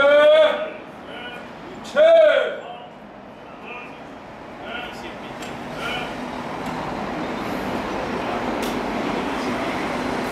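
A gate guard's ceremonial commands: two long, drawn-out shouts, one at the start and one about two seconds in. After them, steady city traffic noise that slowly grows a little louder.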